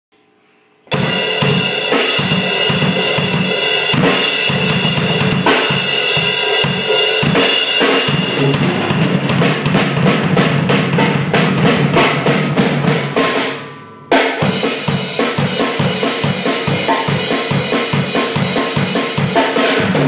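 Acoustic drum kit played in a steady beat, bass drum, snare and cymbals together, starting suddenly about a second in. About thirteen seconds in the playing stops and rings down for a moment, then the beat comes straight back in.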